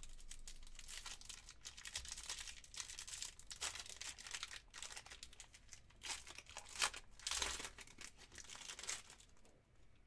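Foil trading-card pack wrapper crinkling and tearing as it is worked open by hand, in a run of crackly rustles that are loudest about seven seconds in.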